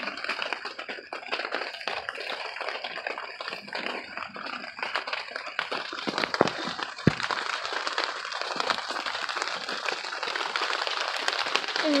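Rain pattering on a greenhouse cover: a dense, even spread of many small drop ticks, with one louder knock about seven seconds in.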